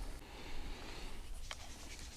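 Faint, steady rustling and scratching, with a single sharp click about one and a half seconds in.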